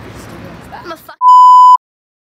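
A woman speaks briefly, then a loud, steady electronic bleep lasting about half a second starts just past the middle and cuts off abruptly. It is a censor bleep laid over her words.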